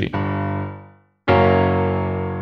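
Piano chords with a descending walking bass in the left hand, passing from A down toward F# to join a B minor chord to an F# chord. The first chord rings and fades, then cuts off abruptly just after a second in; a new chord is struck about a second and a quarter in and rings out.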